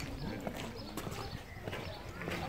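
Footsteps at a walking pace: light, sharp steps about every half second.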